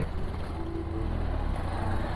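Motorcycle, a Benelli TRK 502X parallel twin, running steadily while riding along, its low engine rumble mixed with wind noise on the rider's microphone.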